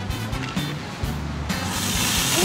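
A Diet Coke and Mentos geyser erupting: soda jetting out of the bottle's nozzle cap with a rising hiss that starts about three-quarters of the way in, over background music.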